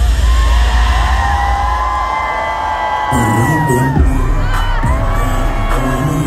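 Live hip-hop music from a concert PA with heavy bass, heard from inside the crowd, with the audience cheering and shouting. Long held notes fill the first half, then the beat comes back in about three seconds in.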